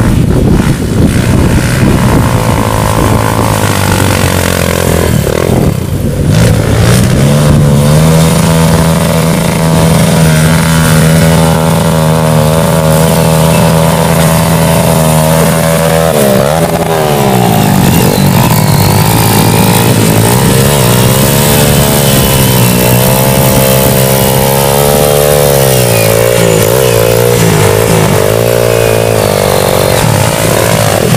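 Off-road dirt bike engines running hard under load on a muddy climb, held at high revs for several seconds at a time. Near the middle the pitch drops and climbs again as a bike's rear wheel spins in the mud.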